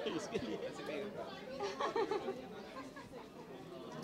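Indistinct chatter: several people talking at once in the background, no single voice clear.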